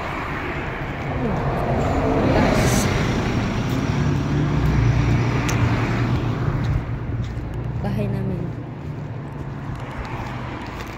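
Cars passing close by on a road: engine and tyre noise swells over a few seconds, stays loudest through the middle and eases off toward the end.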